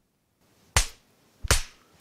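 Two sharp slaps, about three quarters of a second apart, each a single crisp smack.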